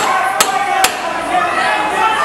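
Three sharp smacks of Muay Thai strikes landing, gloves or shins on the opponent, close together in the first second, over a steady din of shouting voices from the crowd and corners.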